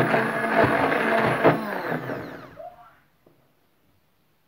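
Electric immersion (stick) blender running in semolina and orange batter. About two and a half seconds in its motor is switched off and winds down, and it is silent by about three seconds in.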